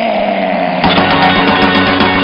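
Live rock band playing: a held guitar chord swells in, and the drums and full band join with a steady beat a little under a second in.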